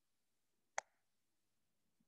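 Near silence, broken by one short, sharp click a little before the middle.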